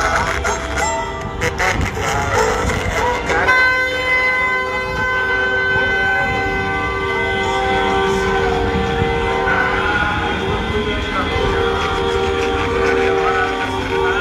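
Several car horns held down together in a long, steady blare at different pitches, starting about three and a half seconds in, from a slow line of cars in a campaign motorcade. Before the horns start, voices are heard.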